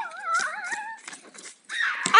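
A wavering, howl-like call whose pitch wobbles up and down for about a second, then breaks off.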